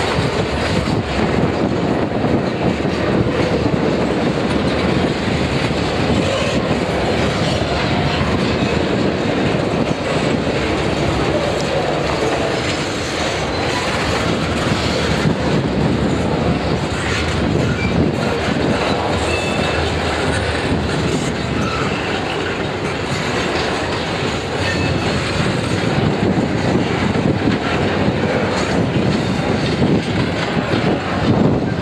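Freight cars rolling past: a steady rumble of steel wheels on rail with rapid clickety-clack over the joints, as covered hoppers, a gondola and then double-stack container well cars go by.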